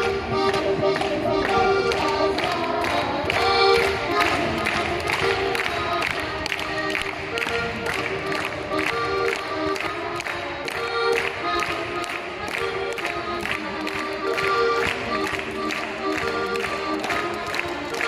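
Folk dance tune led by an accordion, with a steady tapping beat.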